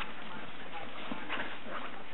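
Two dachshunds play-fighting on a fabric dog bed: dog vocalising mixed with the scuffle of paws and bodies on the bed.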